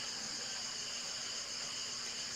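Steady high-pitched chorus of insects, droning without a break.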